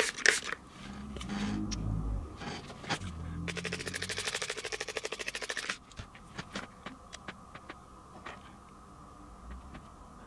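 Spray bottle of isopropyl alcohol misting the scenery for about two seconds, a fast pulsing hiss, wetting the sediment so the glue will soak in. Low handling bumps come before it, and a few faint ticks follow.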